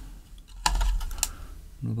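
A dull bump followed by a few light, sharp clicks, typical of handling noise as the camera is repositioned.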